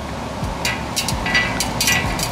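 Steel flex plate rocking on a concrete floor, its warped rim tapping down several times in a quick, uneven series of light knocks. It rocks because the plate is badly out of flat.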